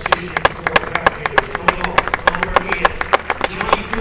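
A handful of spectators clapping steadily, about six sharp claps a second, with voices calling out over it.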